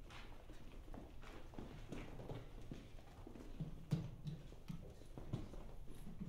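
Quiet, irregular knocks and clicks on a wooden stage, with one sharper click about four seconds in.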